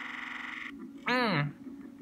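A sustained note from the background music track holds steady and cuts off about two-thirds of a second in; then, a second in, a short high-pitched vocal cry that rises and falls in pitch.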